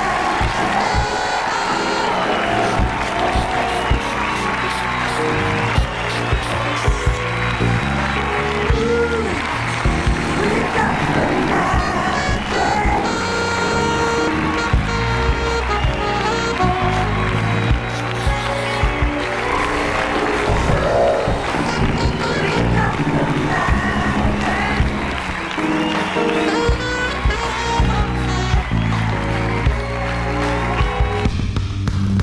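A talk-show house band playing upbeat music with drums and percussion and a steady beat. A studio audience cheers and claps along.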